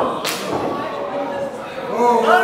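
A single sharp slap about a quarter of a second in, with a short ring-out in the hall, over a low murmur of crowd voices.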